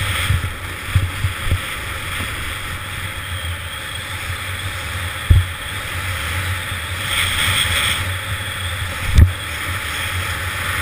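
Wind rushing over a GoPro action camera at skiing speed, mixed with the hiss of skis running on packed snow. Several low thumps break through, the two strongest about five seconds in and near the end.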